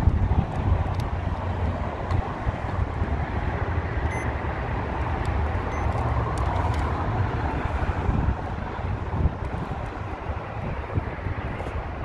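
Wind rumbling on the microphone outdoors, a steady low buffeting, with a few faint clicks.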